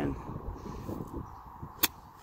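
Golf club striking a ball once near the end, a single sharp click from a half-swing pitch shot.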